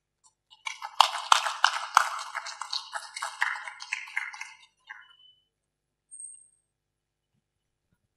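Scattered hand clapping from the audience, irregular claps a few a second, starting about half a second in and dying away after about four and a half seconds.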